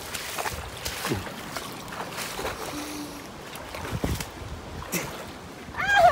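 Irregular crunching steps on loose creek-side stones and gravel over a steady rush of flowing water and wind on the microphone. A short vocal sound comes right at the end.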